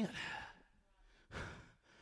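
A preacher's breath in a pause between sentences: a soft exhale trailing off a word at the start, then a quick intake of breath about one and a half seconds in.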